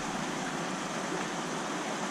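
A steady, even rushing noise from a large aquarium's water circulation running.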